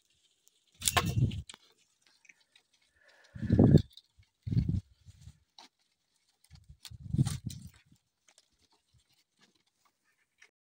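Siberian husky puppies growling and squealing at play in four short outbursts, one with a falling squeal about a second in.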